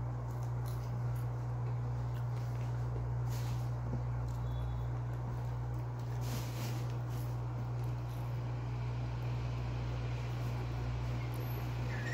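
A steady low hum of room background noise, with a few faint soft rustles.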